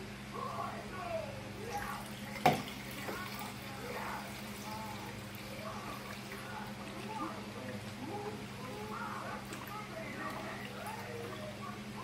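Milk pouring from a carton into a plastic measuring cup, with one sharp knock about two and a half seconds in. Voices murmur in the background over a steady low hum.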